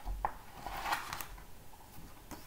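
Page of a picture book being turned by hand: a short papery rustle about a second in, with a few light clicks from handling the book.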